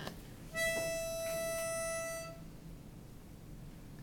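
A pitch pipe blown once, sounding one steady reedy note for about two seconds, starting about half a second in: the starting pitch given to a barbershop quartet before it sings.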